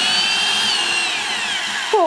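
Old electric drill with a large bit boring through a metal mason jar lid. The motor whine rises quickly, holds, then falls steadily in pitch through the second second before cutting off.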